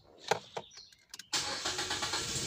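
A Nissan Wingroad's HR15 four-cylinder petrol engine being started: a few short clicks, then the engine catches about a second and a half in and runs on steadily.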